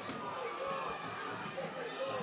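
Football match broadcast ambience: a steady hiss of stadium and crowd noise with faint, distant voices shouting.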